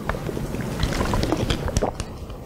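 A man drinking from a thin plastic water bottle: the bottle crackles and clicks as it is gripped and tipped, with gulps, in a dense irregular run of sharp clicks.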